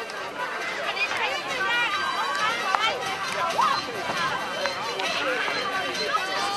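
Many high-pitched voices calling and shouting over one another, like a group at play.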